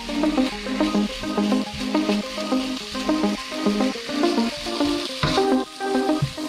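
Background music with a steady run of melody notes, over the sizzle of pork strips frying in a non-stick pan as a spatula stirs them.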